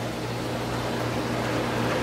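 Steady low mechanical hum with a soft even hiss from running equipment, with no other events.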